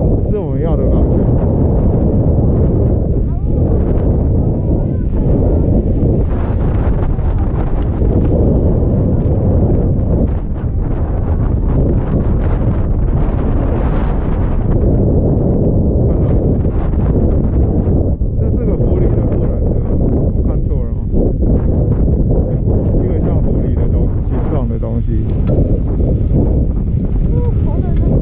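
Wind buffeting a GoPro Hero5 Black's microphone during a chairlift ride: a loud, steady, low rumble that does not let up.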